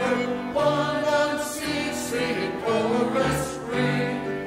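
Mixed church choir of men's and women's voices singing a hymn in parts, over sustained low accompanying notes.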